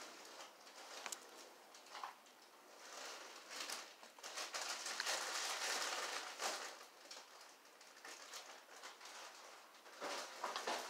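Faint handling sounds of small jewelry-making parts: soft rustling with scattered light clicks as fingers work a thread tassel onto a thin wire earring finding, with a longer rustle about halfway through.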